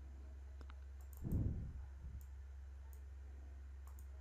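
A few sparse, faint computer mouse clicks over a steady low hum, with one short low sound about a second in.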